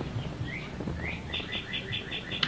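A bird chirping faintly: a few short rising chirps, then about a second in a quick run of short high notes, about seven a second.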